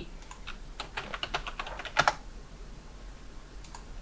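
Computer keyboard keystrokes: a quick run of about a dozen taps typing a password, ending about two seconds in with a louder click, then a couple of faint clicks near the end.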